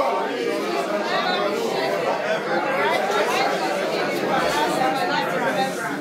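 A congregation reading a Bible verse aloud together: many voices speaking at once, overlapping and slightly out of step, at a steady level.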